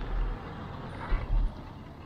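A car passes close to a moving bicycle, heard over steady road noise. Two low wind buffets hit the bike-mounted action camera's microphone, one at the start and one about a second in; these buffets are the loudest sounds.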